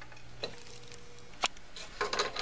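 Scroll saw's steady low hum cuts out about half a second in, followed by sharp clicks about a second apart and light handling of the cut plywood piece as it is lifted from the saw table.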